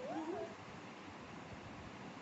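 A child's high, wavering, sing-song voice sliding up and down, cut off about half a second in, then faint room noise.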